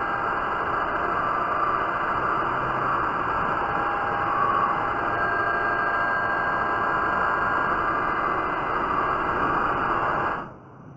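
Metal lathe taking a heavy facing cut across a spinning aluminium part, the tool peeling off long stringy chips. A steady, unbroken cutting noise over the running machine, with a faint whine in it.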